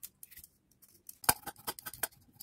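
Handheld julienne peeler shaving a raw carrot into thin strips. It starts with faint scrapes, then a single knock a little over a second in, followed by several quick scraping strokes.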